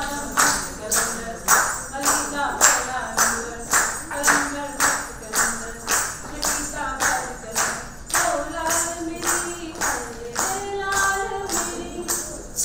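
A woman singing a song solo, with a steady beat of sharp clap-like strikes about two a second underneath.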